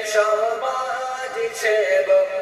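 A voice singing a Bengali song, holding long notes that waver and slide between pitches.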